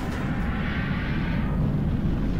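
Steady deep rumble with a rushing hiss and a faint rising tone, a whooshing rocket-like sound effect at the close of a TV programme's opening titles.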